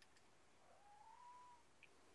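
A cat meowing faintly in the background: one rising call about a second long, near the middle.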